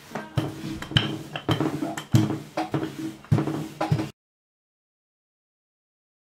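Wooden rolling pin rolling and knocking on a floured tabletop as dough is rolled out: a series of irregular knocks with a low hum from the table. The sound cuts off abruptly about four seconds in.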